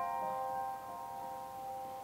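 Soft solo piano background score: the chord from a short run of notes rings on and slowly fades, with a few quiet notes added early on.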